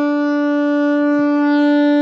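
Alto saxophone holding one long, steady final note of a hymn.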